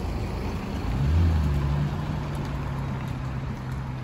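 Lexus LC 500h's 3.5-litre V6 hybrid drivetrain as the car pulls away: the engine note rises about a second in, then holds steady and slowly fades as the car recedes.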